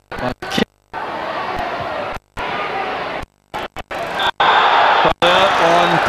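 Football stadium crowd noise that swells into loud cheering about four seconds in, as at a goal. The soundtrack drops out to silence several times, a fault of the worn recording.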